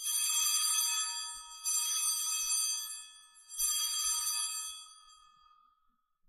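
Altar bells rung three times, about two seconds apart, each ring a bright chime that fades away. They mark the elevation of the chalice just after the consecration.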